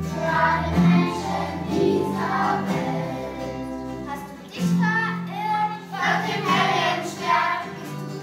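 Children's choir singing a Christmas song in phrases, over steady held low notes.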